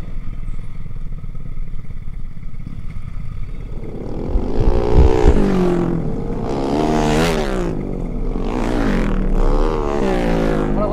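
Sport motorcycle's engine running over a steady low rumble while riding slowly, then from about four seconds in revving, its pitch rising and falling several times as the bike pulls forward through traffic.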